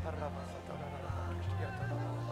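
Slow live worship-band music with a sustained bass note that steps up in pitch about a second and a half in, and a voice vocalizing wordlessly over it, its pitch wavering.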